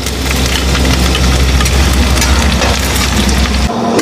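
Chopped garlic and ginger sizzling in hot oil in a steel kadai, with a spoon stirring and scraping against the pan. A low rumble runs underneath and cuts off just before the end.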